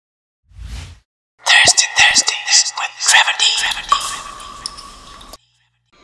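Logo-ident sound sting: a short whoosh, then a dense burst of clicks and voice-like effects, ending in a fading held tone that cuts off abruptly a little over five seconds in.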